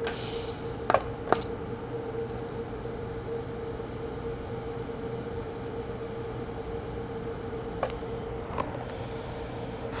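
DC TIG arc from an Everlast 210EXT inverter welder, started with high frequency and burning steadily with a quiet, even hum under foot-pedal control. A brief hiss opens it, and a few sharp ticks come about a second in and again near the end.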